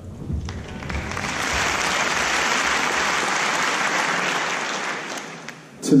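Audience applause, swelling over the first couple of seconds, holding steady, then dying away near the end.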